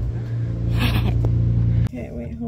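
A car engine idling with a steady low hum, and a brief rustle about a second in. The hum cuts off abruptly just before the end.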